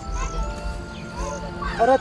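Sung traditional music: long held notes, then a man's voice singing a short, loud phrase that slides down in pitch just before the end.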